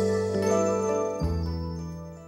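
A short musical jingle used as a segment transition: held, sustained chords that change a little after a second in, then fade out near the end.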